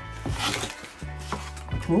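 Small items and packaging shifted around inside a cardboard box: a few light knocks and rustles as things are moved and one is lifted out, over soft background music with low held notes.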